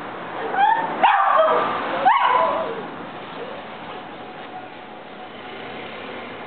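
West Highland white terrier giving three high-pitched barks within about two seconds, each rising sharply at its start.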